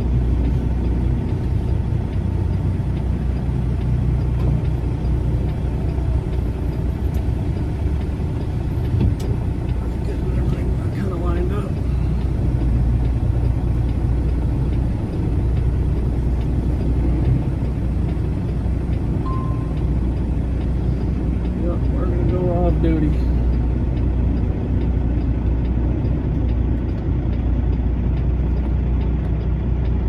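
Semi truck's diesel engine running at low speed, heard from inside the cab as a steady low rumble while the truck creeps into a parking spot.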